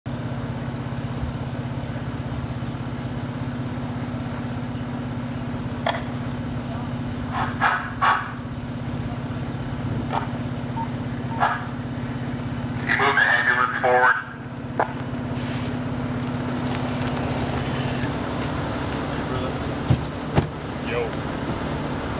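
A vehicle engine idling with a steady low hum, with short, scattered bursts of voices at intervals. Part of the hum drops away near the end.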